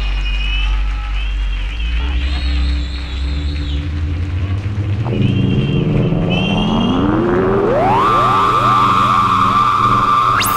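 Electronic synthesizer music: a low drone under warbling high tones, then a tone sweeps steadily upward over several seconds and settles into a held high note about eight seconds in, with further rising glides trailing after it.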